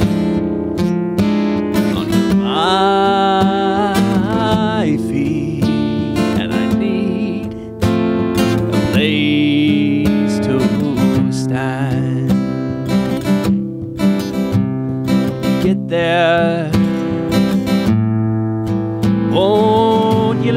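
Acoustic guitar strummed steadily while a man sings, holding several long notes with vibrato, with gaps between the sung lines where only the guitar is heard.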